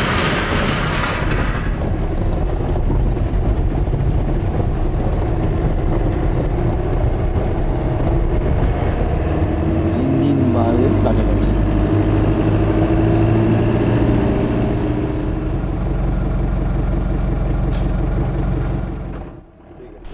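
Engine and road noise heard from inside a moving car on a rough road: a steady low rumble with a constant engine hum. It drops away suddenly about a second before the end.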